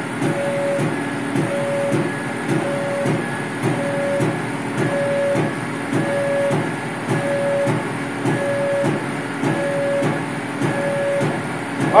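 Laser cutter's gantry stepper motors driving the head around its cutting path, a rhythmic pattern of short whines a little more than once a second. The machine is running at 90% speed and 65% power, the single setting it uses for every step instead of separate etch and cut settings.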